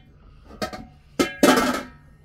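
Metal pots and pans clanking as they are shifted on a shelf while a big Dutch pot is pulled out: a couple of sharp knocks, then a longer ringing clatter near the end.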